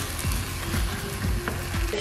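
Kimchi and vegetables sizzling as they fry down in a pan, nearly done, with soft background music underneath.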